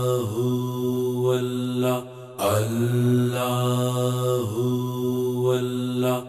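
Devotional Sufi kafi singing: long, steady held notes in two phrases, broken by a short pause about two seconds in.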